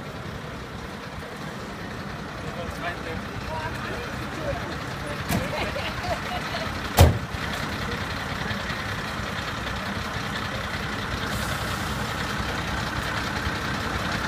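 Fire engines idling with a steady low rumble, voices in the background, and one sharp knock about seven seconds in.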